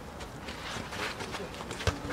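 Footsteps of players running on an artificial football pitch, then one sharp thump of the ball being struck near the end.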